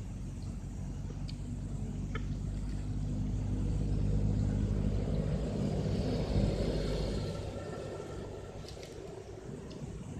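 A motor vehicle passes on the road: its engine grows louder to a peak about six to seven seconds in, then fades away.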